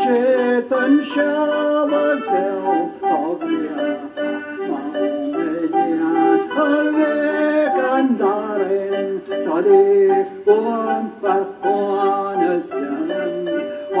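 A man singing a Gaelic song over a steady instrumental accompaniment.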